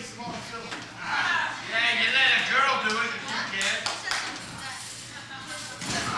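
Untranscribed voices calling out in a large room, with a few short sharp impact sounds about halfway through.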